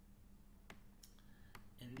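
A few faint, sharp clicks, about four spread over two seconds, from computer input while strokes are drawn on a slide. A faint steady low hum lies underneath.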